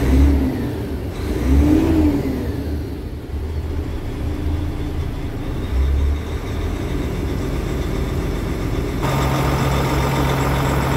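DAF CF tipper's diesel engine revved in neutral, heard from the cab: two short blips near the start, the pitch rising and falling, then settling back to idle. About nine seconds in it is heard from outside by the exhaust stack, idling steadily.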